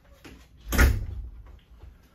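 A door shutting: one loud thud with a short rush of noise, a little under a second in, fading quickly.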